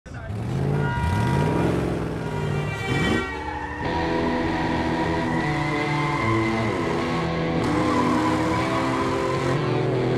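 Vehicle engines revving, rising in pitch twice in the first few seconds, then a steady engine and score sound with long held notes for the rest.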